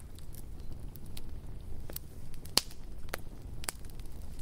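Campfire crackling: a low, steady rumble with irregular sharp pops scattered through it.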